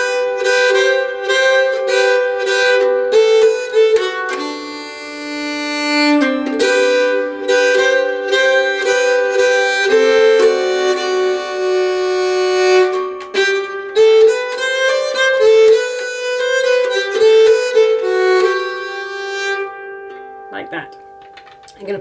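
Nyckelharpa, the Swedish keyed fiddle, bowed slowly through a polska melody, one sustained note after another. The playing stops near the end and the last notes die away.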